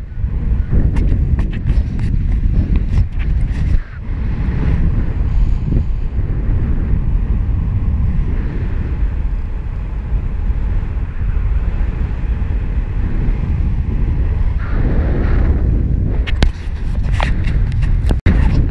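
Airflow buffeting an action camera's microphone in paraglider flight: a loud, steady low rumble, with a few sharp clicks and rustles near the end.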